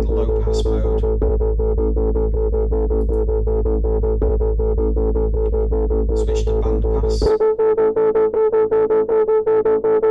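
Looped djembe drum pattern with fast, even hits, played through Groove Agent 5's Tube Drive filter with a heavy, distorted low end. About seven seconds in the filter is switched to band pass: the bass drops away and only a narrow, ringing midrange band around 400 hertz is left.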